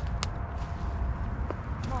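Low, continuous rumble of wind buffeting the microphone outdoors, with two short sharp clicks, one just after the start and one about a second and a half in.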